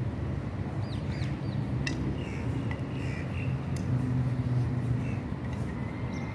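Outdoor ambience: a steady low mechanical hum, with a few short bird chirps and calls about a second in and again between two and three and a half seconds in. A single sharp click sounds near two seconds in.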